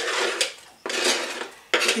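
A kitchen knife blade scraping across a plastic cutting board, sweeping sliced onion off into a cooking pot: two scraping strokes, each under a second long.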